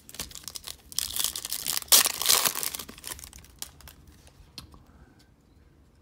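Foil trading-card pack being torn open and its wrapper crinkled, loudest between about one and three seconds in, then dying away to light handling of the cards.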